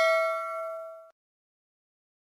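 Notification-bell 'ding' sound effect of a subscribe-button animation ringing out after its strike. Several steady tones fade away and then cut off suddenly about a second in.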